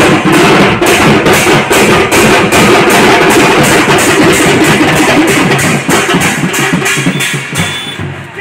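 Drums beaten loud and fast in a steady rhythm, about three strokes a second, over a dense din.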